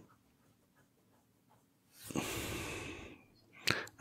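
About halfway in, a man breathes out audibly in one long sigh lasting about a second. A short click follows near the end.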